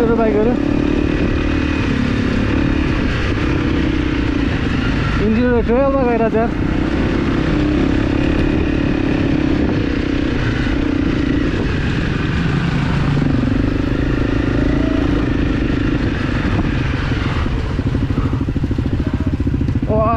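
Dirt bike's single-cylinder engine running steadily at moderate revs over a rough trail, its pitch drifting up and down with the throttle. A voice is heard briefly about five seconds in.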